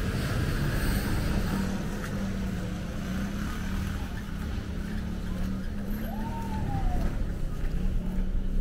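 City street traffic: a vehicle engine running with a steady low hum over general traffic noise. A short high tone rises and falls about six seconds in.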